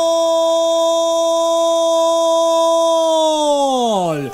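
Radio football commentator's long, held shout of "gol" announcing a goal just scored: one sustained note that falls in pitch near the end as his breath runs out.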